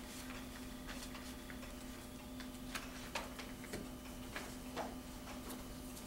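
Papers and pens being handled on a meeting table: scattered soft clicks and rustles at irregular intervals over a steady hum.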